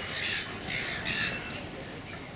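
A bird calling three times in quick succession: short, high, harsh calls, each about a third of a second long, within the first second and a half.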